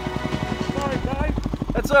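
Yamaha WR250R dirt bike's single-cylinder engine idling with a steady, fast putter of about a dozen pulses a second, as the bike lies where it fell after a crash.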